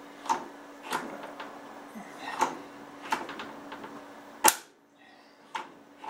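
Scattered sharp metal clicks and clacks of a steel wrench and door-latch bracket being worked on an old car door, the loudest about four and a half seconds in. A steady low background hum cuts off just after that loudest clack.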